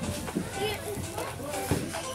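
Several voices chattering and calling out, including high children's voices. None of the speech is clear enough to make out.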